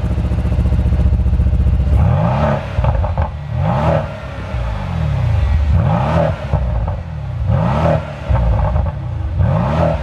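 Mercedes-AMG C63 S twin-turbo V8 exhaust, heard from behind the quad tips: it idles for about two seconds, then is blipped five times, each rev rising and dropping back, with crackles and pops as it comes off each rev. The exhaust is in race mode, its loudest, most crackly setting.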